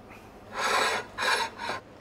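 A man's short, breathy laugh: three quick bursts of breath.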